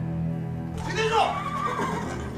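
A horse whinnying, a call of about a second that starts under a second in, with falling pitch, over background music.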